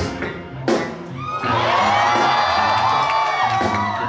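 Live instrumental band of electric bass, electric guitar, keyboards and drum kit playing, with a sharp drum hit just under a second in, then long held lead notes that bend in pitch over the rhythm section.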